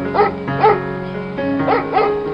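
A dog barking repeatedly, about four barks in two seconds, over background music with long held notes.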